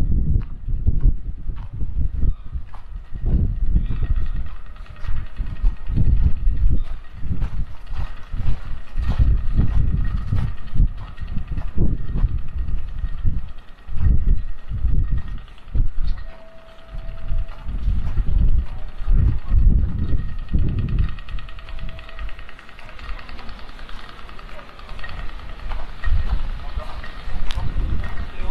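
Street ambience picked up by a camera carried on foot along a snowy street: irregular low rumbling thuds on the microphone, with a faint steady city hum above them.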